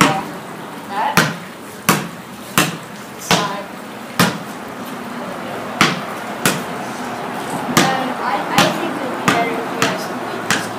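Basketball dribbled on a concrete patio floor: about a dozen sharp bounces, roughly two-thirds of a second apart, with a pause of about a second and a half near the middle.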